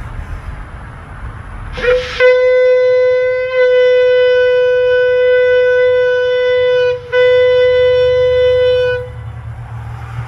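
Shofar blown in two long steady blasts: the first starts about two seconds in and is held for about five seconds, and the second follows a brief break and lasts about two seconds.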